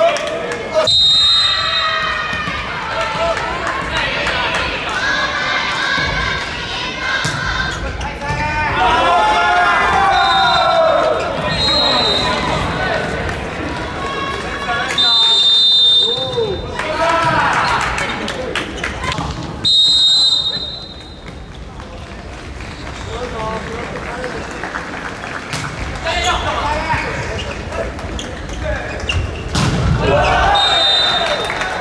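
Indoor volleyball rally sounds: the ball struck and bouncing on the court, with players and crowd shouting. Short, steady referee whistle blasts sound about six times.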